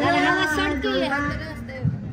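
A woman's high voice singing into a handheld microphone, amplified through the sound system, trailing off near the end.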